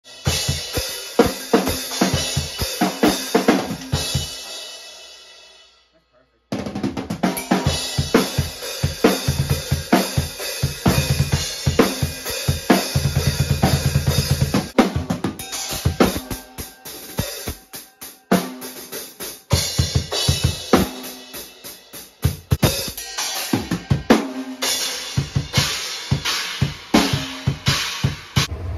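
Acoustic drum kit played hard and fast: snare, bass drum, hi-hat and cymbal hits. A cymbal rings out and dies away about four to six seconds in, then after a brief silence the playing starts again abruptly, with a dense run of low bass-drum strokes around halfway.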